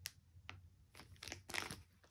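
Plastic packaging around a bundle of fabric strips crinkling as it is handled, in several short rustles with the loudest about one and a half seconds in.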